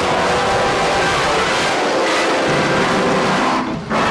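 A loud, dense jumble of many distorted video-logo soundtracks playing over one another at once, with no single sound standing out. It dips briefly just before the end.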